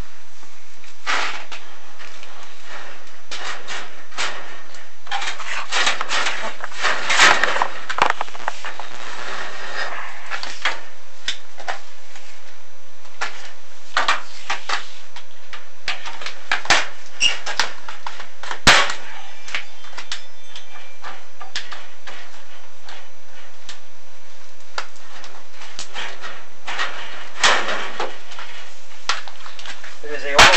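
Irregular knocks, clicks and scraping from a chimney inspection camera and its cable rubbing and bumping against the corrugated walls of a flue liner as it is lowered. There is a longer run of scraping about six to ten seconds in, and a faint steady tone from about ten seconds on.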